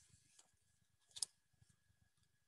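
Near silence in a small room, broken by one short papery click about a second in as a laminated flashcard is handled.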